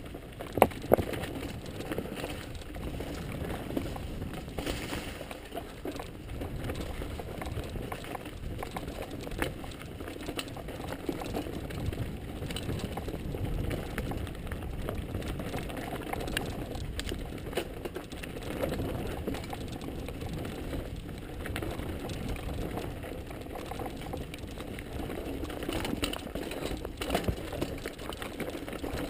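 Mountain bike riding over rocky dirt singletrack: a steady rumble of tyres on dirt and stone with the bike rattling and scattered knocks from rocks, including a couple of sharp knocks about a second in.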